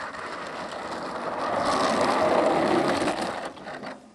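Radio-controlled Funtana aerobatic model airplane rolling out along an asphalt runway after landing, its motor at low power and its wheels and gear rattling on the surface. The rattly noise grows louder as the plane comes near, then drops off near the end.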